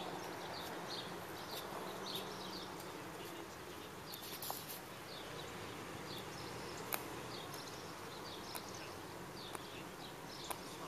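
Outdoor ambience of short, high chirps repeating throughout, over a low steady hum, with a single sharp click about seven seconds in.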